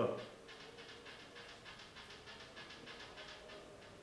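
Faint, tinny voice of the caller leaking from a mobile phone's earpiece held to the listener's ear.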